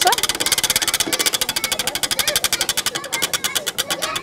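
Spinning wooden prize wheel: the pegs around its rim click rapidly against the pointer, and the ticking slows a little as the wheel loses speed.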